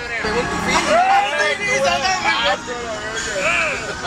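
Several men's voices talking and calling over one another inside a moving passenger van, with the van's engine and road noise underneath.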